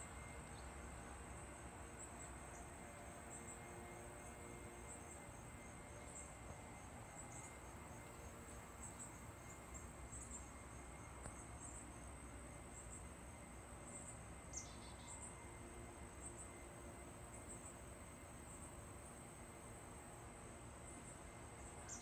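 Faint, steady, high-pitched drone of insects such as crickets, running without a break over a low outdoor hiss, with one short chirp about two-thirds of the way through.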